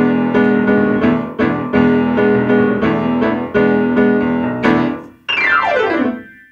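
Solo piano playing a string of loud, struck chords, about two to three a second. Near the end comes a fast downward run from high notes to low.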